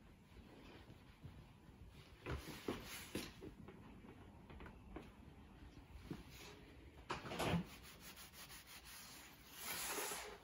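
A steel rule and marking tool scraping and rubbing on the end grain of a square ash blank as its center is marked out: a few short, faint scratchy strokes, the loudest about seven seconds in.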